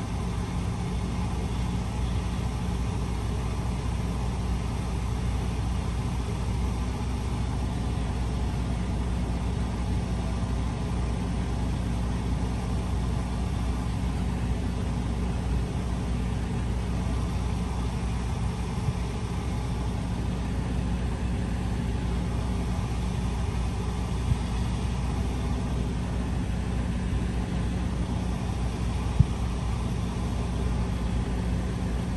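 Semi truck's diesel engine idling steadily, heard from inside the cab, with a few faint clicks.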